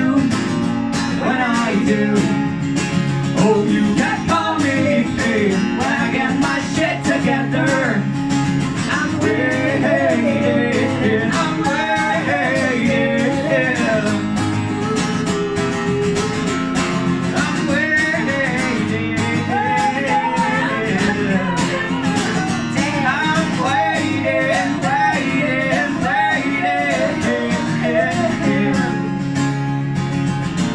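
Acoustic guitar strummed steadily under sung vocals in a live performance of a song.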